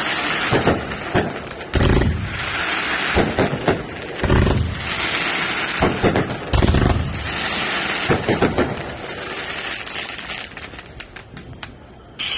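Aerial fireworks going off overhead: three deep booms about two seconds apart amid continuous crackling and popping from the bursting shells, dying down near the end.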